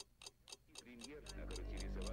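Steady clock-like ticking, about four ticks a second, with a low drone swelling in about halfway through, getting steadily louder and carrying wavering tones above it.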